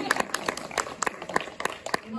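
Audience applause: a scatter of separate hand claps with some voices among them.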